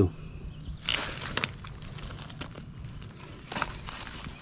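Crunching and rustling of leaf litter and loose stones underfoot on a muddy riverbank, in short scattered crackles, with a cluster about a second in and another near the end.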